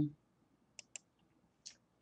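Three faint computer mouse clicks: two in quick succession about a second in, and one more near the end.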